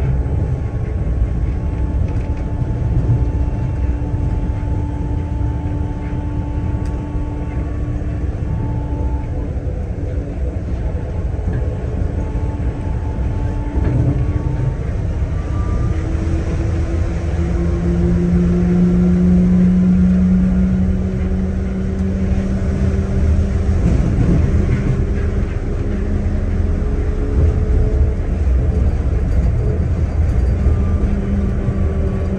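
Kanazawa Seaside Line driverless rubber-tyred guideway train running along its elevated track, heard from inside the car. A steady low rumble runs under a motor whine made of several tones. The whine rises gently in pitch through the second half as the train gathers speed.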